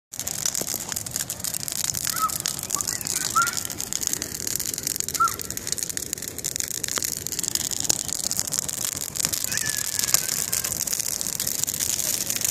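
Brush pile of oak branches burning, with constant irregular crackling and popping. A few short bird chirps sound over it.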